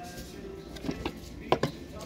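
A few light clicks and knocks from a hard plastic case being handled with its lid open, the clearest about one and a half seconds in, over faint background music.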